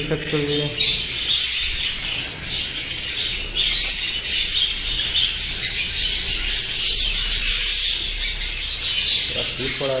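A large flock of budgerigars chattering continuously while feeding, a dense, high-pitched twittering.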